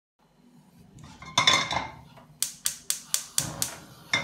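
A metal wok clanks down onto a gas hob's pan support, then the hob's spark igniter clicks six times, about four a second, as the burner is lit.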